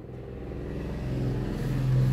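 A low, steady engine-like rumble with a droning tone, growing louder over the two seconds.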